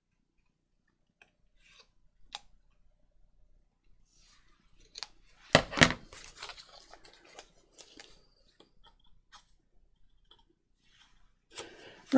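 A few light snips of scissors cutting paper, then a loud double clatter about halfway through as metal scissors are set down on a cutting mat, followed by soft rustling of paper being handled.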